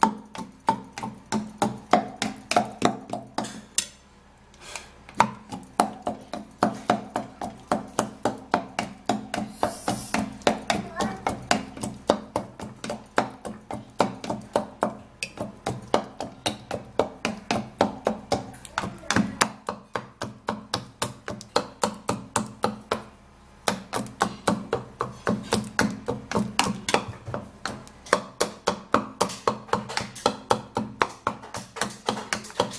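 Wooden pestle pounding and mashing banana in a small wooden mortar: a steady run of knocks about three a second, with two short pauses.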